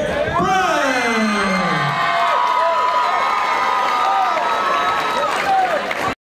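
Boxing crowd cheering and shouting for the announced winner, with single voices calling out over the noise, one in a long falling shout in the first two seconds.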